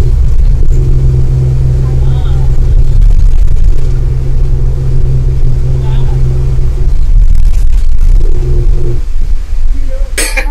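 A government bus's diesel engine running, heard from inside the passenger cabin as a loud steady drone with a hum that dips briefly twice and fades near the end.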